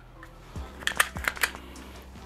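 A quick run of about five small, sharp clicks within half a second, from a Glock 30 pistol with a mounted weapon light being handled.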